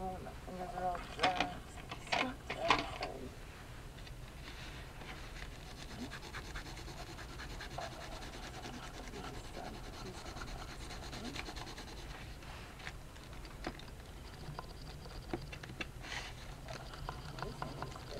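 Soft scratching and rubbing of a pencil and hands working over watercolour paper, with scattered small ticks.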